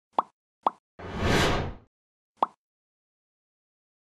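Produced sound-effect sting: two quick pitched plops about half a second apart, a whoosh that swells and fades over just under a second, then a third plop.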